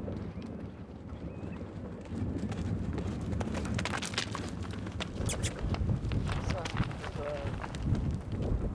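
Footsteps crunching on loose gravel and rubble: irregular short knocks that begin about two seconds in, with people's voices in the background.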